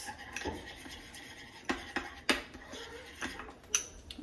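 A metal spoon stirring peanut butter powder and water in a ceramic bowl, with a few sharp clinks spaced a second or so apart as the spoon knocks against the bowl.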